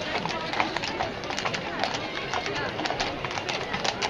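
Hooves of a pair of carriage horses clip-clopping on the street in irregular clicks, over the chatter of a crowd of spectators.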